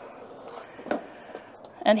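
Quiet room tone with one sharp click about a second in and a fainter tick after it, as a metal lunch pail is handled. A woman's voice starts just before the end.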